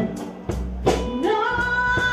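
Live blues band playing: electric bass under a lead line that slides up into a held note about halfway through.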